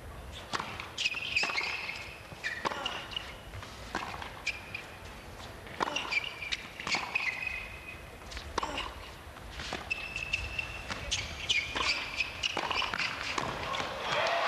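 Tennis ball being struck and bouncing, with short high squeaks of tennis shoes on a hard court as the players move during a rally.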